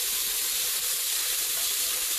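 Blended sofrito frying in hot oil in a stainless steel pot: a steady sizzling hiss.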